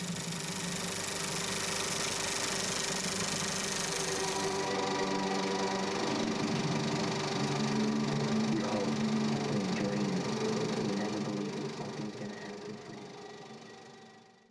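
Super 8 film projector running: a steady mechanical whir of the motor and film transport, fading out over the last few seconds.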